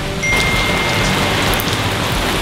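Steady hiss of rain, with a faint thin high-pitched tone running through most of it.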